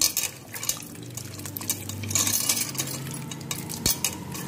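Wet squishing and sloshing as a hand squeezes soaked tamarind pulp in water in a metal pot, with irregular light clinks against the pot.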